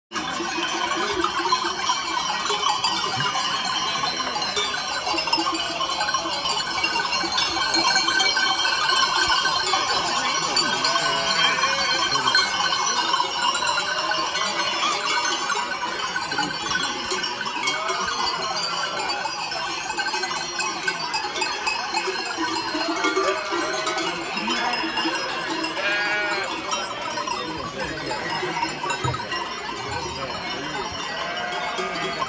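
A large flock of belled sheep: many metal sheep bells clanging and jangling continuously as the animals mill about, with sheep bleating through the bells, more often in the second half.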